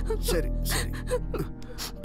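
A woman crying, with several gasping, sobbing breaths and whimpers, over background music with long held notes.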